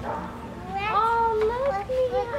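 A young child's high-pitched, drawn-out voice starting about halfway in, holding long notes that bend a little in pitch.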